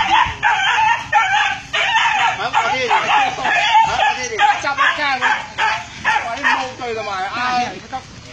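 Dogs barking and yelping over and over in a rapid, overlapping run of short calls, the sound of street dogs squaring off.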